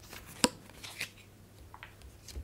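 Cardboard board-game tokens handled on a tabletop: one sharp tap about half a second in, then a softer tap about a second in.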